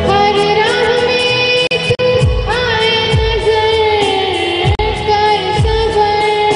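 A woman singing a song into a microphone over a PA, holding long wavering notes, accompanied by an electronic keyboard with low drum beats.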